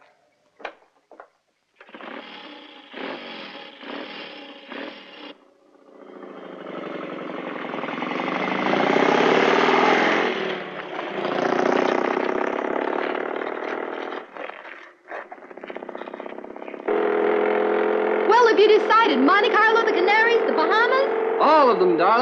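Motorcycle with sidecar running, growing louder and then fading as it passes. About seventeen seconds in, music with a wavering melody starts.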